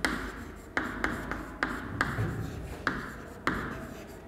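Chalk writing on a chalkboard: scratchy strokes with a sharp tap each time the chalk is set to the board, about eight taps at uneven spacing.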